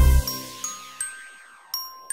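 Intro music ends on a full chord with a deep bass a moment in, then gives way to four sparse, bright bell-like pings, each ringing out and fading.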